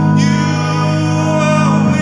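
Live music: sustained chords on a Nord Stage keyboard, held steady and shifting to a new chord shortly before the end.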